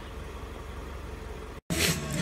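Steady background noise with no distinct event. Near the end it drops out for an instant at an edit, then returns slightly louder.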